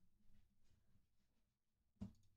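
Near silence: room tone with a few very faint clicks in the first second.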